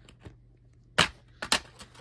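A plastic DVD case being snapped open: a sharp click about a second in, then a second click about half a second later, with a few lighter plastic ticks.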